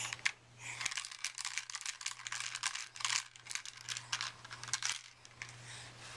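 Plastic baby toy keys on a ring clicking and rattling in a baby's hands, with rustling as she handles them. The clicks are dense and irregular.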